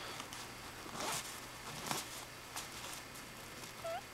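A dress zipper being pulled by hand in several short zips, the longest about a second in.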